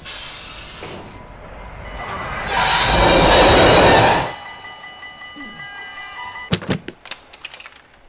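Train rushing past: a swell of rail noise with high, steady squealing tones, loud for about two seconds and then cut off sharply, the squeal lingering faintly after. A few sharp clicks follow near the end.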